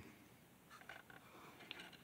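Near silence, with a few faint clicks from hands handling a plastic battery connector.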